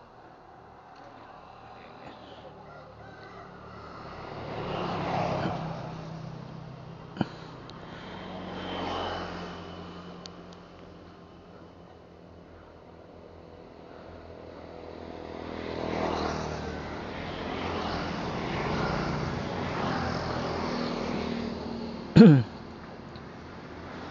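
Traffic passing on the road: three vehicles go by one after another, each swelling up and fading away, the last and longest between about fifteen and twenty-one seconds in. A single sharp click comes just after seven seconds.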